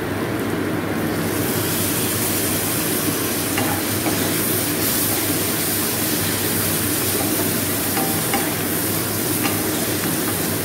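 Onion stalks, tomato and spices frying in oil in a nonstick kadai, stirred with a spatula: a steady sizzle whose hiss grows brighter about a second in. This is the kosha stage, the masala being sautéed down in the oil.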